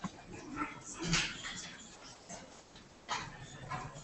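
Quiet room with a few faint rustling noises and murmurs, the clearest about a second in and again about three seconds in.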